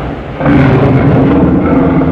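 Geronimon kaiju roar sound effect: the end of one loud roar fades out at the start, and about half a second in a second low, pitched roar begins and holds.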